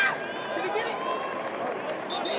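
Several men's voices shouting and calling out over one another on the football field during a running play, with a loud shout right at the start.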